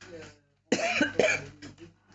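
A person coughing: a quick run of several sharp coughs starting a little under a second in, dying away over the next second.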